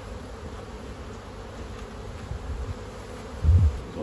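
Honeybees buzzing steadily around an open hive, a constant hum with a faint held tone. A brief low thump about three and a half seconds in.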